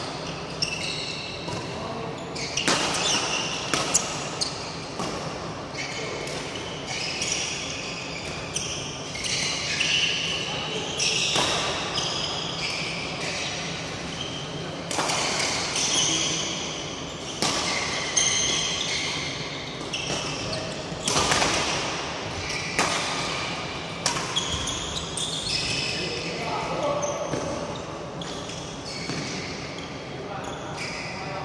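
Badminton rally: racket strings striking a feather shuttlecock with sharp smacks every few seconds, and many short high squeaks from court shoes on the mat floor, echoing in a large hall.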